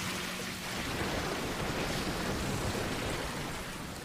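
Steady rain falling and pattering on the ground.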